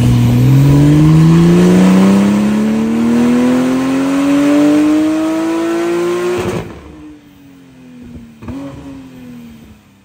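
Porsche 992 Turbo S twin-turbo flat-six with a titanium exhaust, loaded on a hub dyno at full throttle: its pitch climbs steadily for about six seconds through the rev range, then it lifts off abruptly and winds down much quieter, with a short blip near the end.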